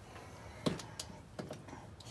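A few light, sharp clicks and knocks, about four within a second, from tools and parts being handled on a workbench.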